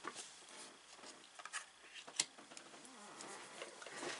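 Soft rustling and light taps of tarot cards being handled and laid down on a table, with a sharper click about two seconds in.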